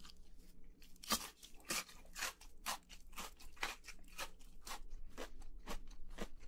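A mouthful of crispy fried chicken nugget chewed close to the microphone: a regular run of crisp crunches, about two a second, starting about a second in.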